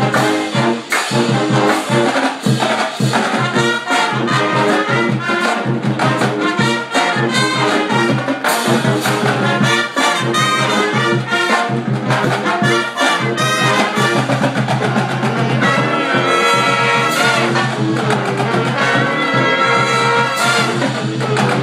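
College pep band playing live and loud: trumpets, trombones and sousaphone over a steady beat.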